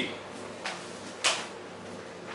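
Two brief handling noises about half a second apart, the second louder and sharper.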